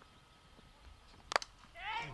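A cricket bat striking the ball once, a single sharp crack about halfway through against faint background. It is a lofted hit that sends the ball up in the air for six.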